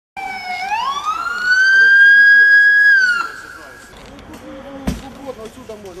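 A siren winding up: one tone rising in pitch over about a second, holding high and steady, then dropping away about three seconds in. Faint voices follow, with a single sharp knock near the end.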